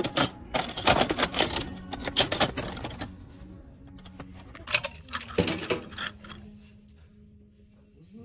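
Steel kitchen knives clattering against each other and a plastic bin as a hand sorts through them: a dense run of clinks for the first three seconds, another burst around five seconds, then quieter.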